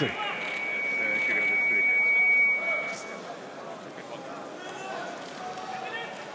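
Arena crowd noise and indistinct voices. A single steady high-pitched, whistle-like tone is held for about three seconds while the crowd swells, then the crowd settles back to a lower murmur.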